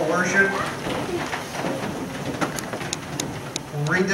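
A man's voice speaking briefly, then a pause of about three seconds holding faint room noise and a few small clicks, before speech starts again at the very end.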